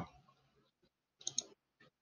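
A few faint computer mouse clicks about a second and a half in, against near silence.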